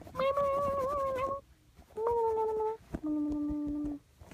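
A young girl's voice singing three held wordless notes, each lower than the one before; the pitch of each note stays almost level, the first wavering slightly.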